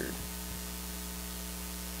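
Steady electrical mains hum with a faint hiss from the microphone and sound system, holding at an even level with no other sound.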